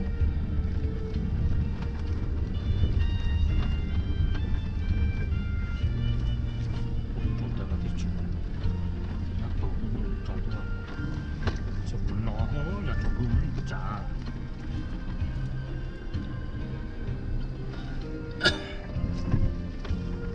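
Music with vocals playing inside a vehicle's cabin, over the steady low rumble of the vehicle driving on a dirt road. A sharp knock comes near the end.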